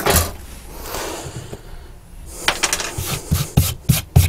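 Hands brushing and handling a chipboard board on a worktop: a brief rush of noise in the first second or so, then a series of light knocks and taps from about two seconds in.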